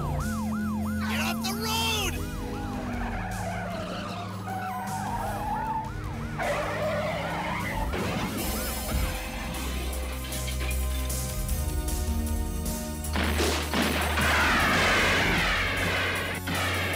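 Car-chase film soundtrack: a police car siren wailing up and down rapidly for the first few seconds, under a musical score of steady low held notes with engine and road noise. A louder, harsher noisy passage comes in near the end.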